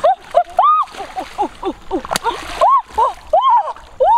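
Splashing and sloshing in shallow muddy water as a large fish is grabbed by hand, under a string of short, high, excited voice cries, about three or four a second.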